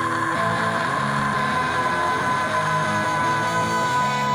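Live rock band playing an instrumental passage between vocal lines: electric guitar chords ring out under a steady held high note, with no singing.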